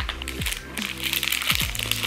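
Background music with steady low notes, over the crinkling of a paper tea-bag sachet being torn open and the tea bag pulled out.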